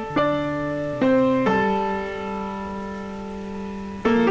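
Background piano music: a few notes and chords struck in the first second and a half, then held and slowly fading.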